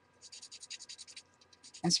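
Paper blending stump rubbed across pencil shading on paper in quick, soft strokes, about ten a second, smudging the graphite from the edge of the shape toward the centre.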